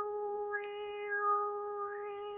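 A woman's voice holding one long, steady, fairly high "ooo" tone. Its vowel opens and closes about once a second. It is a mouth-made imitation of UFO lights blinking in and out.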